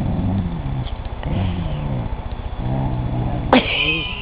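A dog's low, moose-like moaning growl, made in three drawn-out calls that rise and fall in pitch: the dog complaining at kittens pestering him. Near the end a sharp click is followed by a high, long cat meow.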